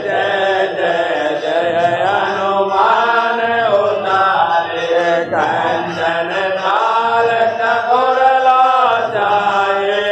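Hindu aarti hymn chanted in a continuous melodic line, the voice gliding up and down through long drawn-out phrases.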